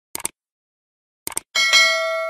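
Subscribe-animation sound effects: a short double click about a tenth of a second in, another just past one second, then a notification bell chime of several steady tones that rings on from about one and a half seconds in.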